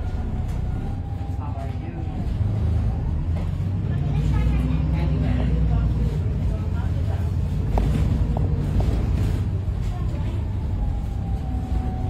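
Interior sound of a VDL SB200 Wright Pulsar 2 single-deck bus on the move: the diesel engine runs with a steady low rumble and gets louder from about two seconds in as the bus picks up speed. A thin steady whine is heard at the start and again near the end.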